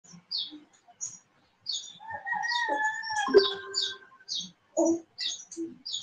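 Small birds chirping repeatedly in the background, short high chirps two or three a second. A steady tone is held for about two seconds in the middle.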